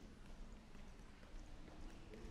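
Faint footsteps on a wooden stage floor: light, irregular taps over a low hum of room noise.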